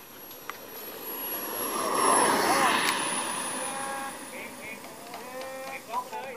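Radio-controlled model airplane landing: a thin high motor whine falling slowly in pitch, with a swell of rushing noise as the plane comes down and runs along the runway, loudest about two to three seconds in.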